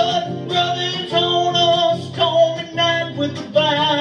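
Acoustic guitar strummed in a steady rhythm, with a man's voice swooping up into a held sung note and carrying on over the chords.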